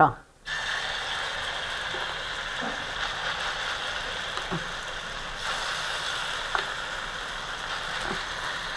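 Kalthappam batter frying in hot oil in an aluminium pan: a steady sizzle that starts about half a second in as the batter goes into the oil, with a few faint spoon ticks.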